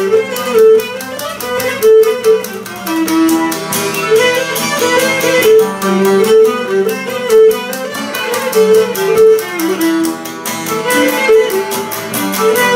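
Cretan lyra playing a lively melody with the bow, accompanied by a laouto's quick plucked strumming.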